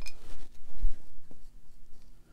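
Watercolour brush working paint on the palette and paper: a light click at the start, then soft scratching brush sounds with a small bump and tick.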